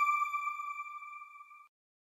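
Tail of the electronic chime of a news outro logo sting: one held pitch with overtones, fading away and stopping about three quarters of the way through.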